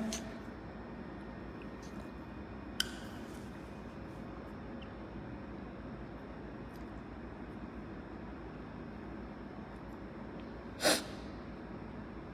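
Quiet steady room noise, with a single click about three seconds in and a short sniff near the end.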